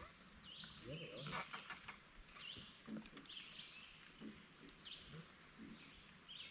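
A songbird singing quietly: short, high, rising chirped phrases repeated every second or so.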